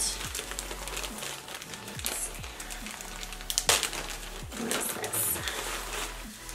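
Plastic packaging bag crinkling and rustling as it is handled, in several short bursts, over faint low tones that fall in pitch again and again.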